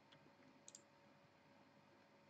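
Near silence: room tone, with two faint short clicks in the first second.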